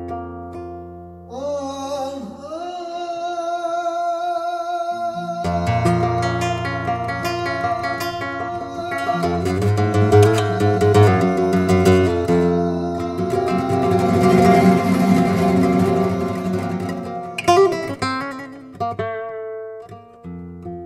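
Flamenco guitar playing an Arabic-flavoured flamenco piece, with a voice singing long, wavering melismatic lines over it and deep sustained low notes beneath. The music grows fuller and louder from about a quarter of the way in, then thins out near the end.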